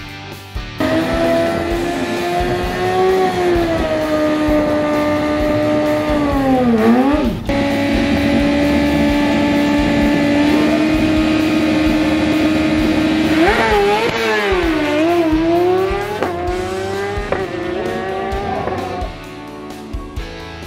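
Drag-racing engine revved high and held at a steady pitch for several seconds, its pitch dropping sharply about seven seconds in and wavering up and down again a little past the middle, with background music underneath.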